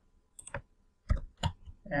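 A few sharp computer keyboard keystrokes and mouse clicks, in two small clusters about half a second and a second in; a voice starts at the very end.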